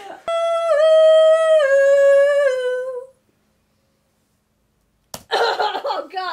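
A woman's voice humming one long high note that steps down in pitch three times before fading out. It breaks off into about two seconds of dead silence, then a click and a short burst of her voice near the end.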